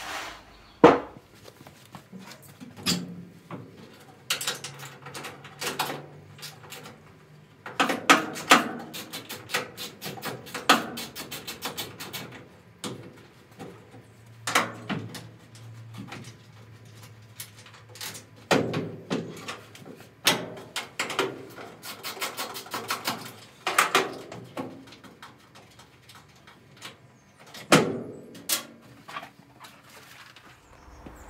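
Knocks, clicks and clatter of a classic Mini Clubman's old steel boot lid being worked loose and lifted off the car, with several runs of rapid clicking.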